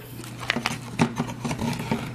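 Light clicks and rustles of takeout food packaging being handled on a countertop, several irregular taps over a steady low hum.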